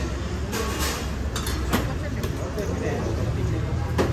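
Busy street-food stall ambience: a steady low hum under indistinct customer voices, with a few sharp clicks and clatters of cooking utensils on the griddle in the first half.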